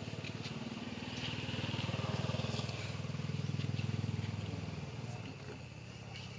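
A motor vehicle's engine passing by, growing louder over a couple of seconds and then fading away.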